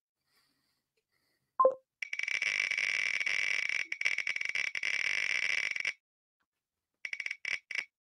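Spin sound effect of an online picker wheel, heard through the stream's audio. A short beep comes about a second and a half in, then a very rapid ticking for about four seconds. Near the end it gives way to separate, slower ticks as the wheel winds down.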